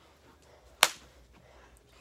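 A single sharp smack a little under a second in, over a quiet room.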